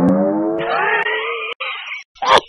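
A car engine revving loudly, its pitch rising slowly, with a hissing, screeching layer joining just after half a second in. It cuts out briefly near the end, then resumes.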